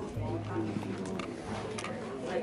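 Indistinct voices murmuring, with music playing faintly underneath and a steady low hum.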